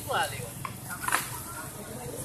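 A short snatch of a person's voice near the start over a steady outdoor background murmur, with one sharp click a little past halfway.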